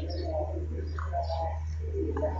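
Bird calls with low, repeated cooing notes, three short ones in two seconds, over a steady low hum.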